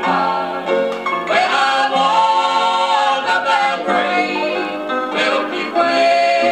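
Southern gospel music played from a 1969 vinyl LP on a turntable: a family singing group's voices in harmony, continuous and loud.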